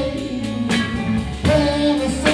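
A live band plays a bluesy rock song: a lead singer sings a line over electric guitar and drum kit, with drum hits about every three-quarters of a second.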